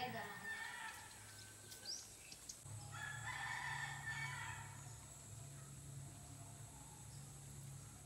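A rooster crowing once, starting about three seconds in.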